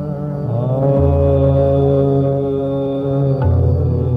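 Hindustani classical male vocal in raag Kaushik Dhwani over a tanpura drone. The voice glides up into a long held note, then moves off it near the end.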